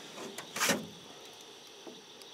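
Steady high chirring of night insects, with one short scraping swish a little past half a second in.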